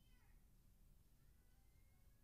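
Near silence: room tone, with a faint high-pitched falling call at the very start.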